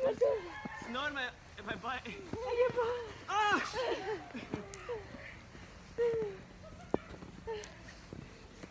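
Several people laughing, squealing and shouting in play, high-pitched and in short bursts, with a single sharp tap near the end.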